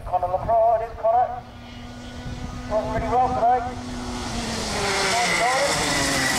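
Kart's 125cc two-stroke engine getting steadily louder as the kart approaches over the second half, with people talking over it in the first half.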